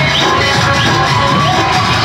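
Loud dance music from a DJ sound system, with a steady beat and a short high rising sound repeating about every two-thirds of a second.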